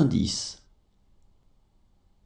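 A voice finishes reading out a French number, stopping about half a second in, followed by near silence with only faint room tone.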